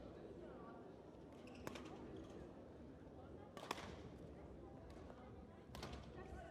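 Faint badminton rally: a few sharp racket hits on the shuttlecock, about two seconds apart and loudest near the middle, over the quiet ambience of a large hall.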